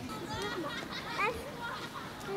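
Young children's voices: several short, high-pitched calls and bits of chatter, with no clear words.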